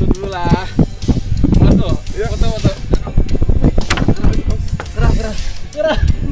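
Background music with a drum beat, with people's voices over it.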